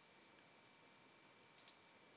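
Near silence, with a computer mouse clicking twice in quick succession about three-quarters of the way through.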